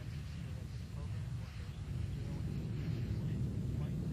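Atlas V rocket climbing after liftoff, its RD-180 main engine and solid rocket boosters making a steady low rumble that grows slightly louder toward the end.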